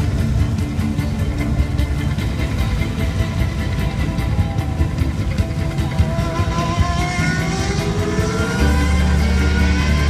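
A car engine accelerating over music, its note rising from about seven seconds in. A heavy bass comes in near the end.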